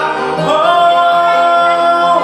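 A man singing live to his own Kawai ES6 digital piano accompaniment, holding one long steady note that starts about half a second in, over sustained piano chords.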